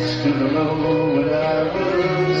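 Live band music: steady guitar chords under a held, wavering melody line.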